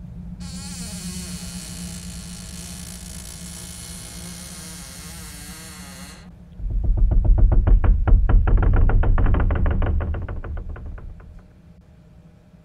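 Eerie horror-film sound design. A high hissing drone with wavering tones runs for about six seconds, then gives way to a much louder low rumble with a rapid flutter, which fades out near the end.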